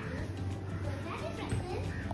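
Faint, distant children's voices calling and playing, over a steady low hum.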